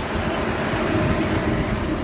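Mitsubishi asphalt paver's engine running steadily as the machine is driven up onto a flatbed trailer.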